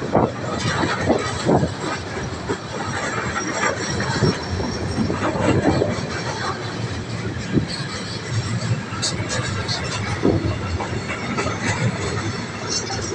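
Freight wagons loaded with logs rolling past at low speed, their wheels clicking and rumbling over the rails in an irregular run of knocks.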